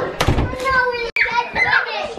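Children's voices shouting and squealing as they play, with a momentary dropout of all sound about a second in.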